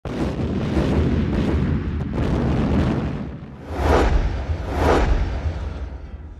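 Deep, rumbling boom-like sound effect with heavy bass, swelling loudly twice, about four and five seconds in, then fading near the end.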